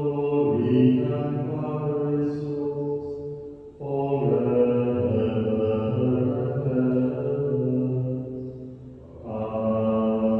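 Liturgical chant sung in long, held phrases with short pauses about four and nine seconds in.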